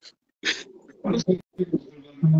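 Men laughing in short, breathy bursts.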